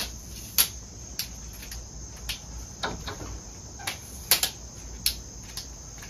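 Irregular sharp clicks and snaps from a lightweight aluminum tripod's telescoping leg sections and flip-lock tabs as they are adjusted, with a steady high-pitched hum underneath.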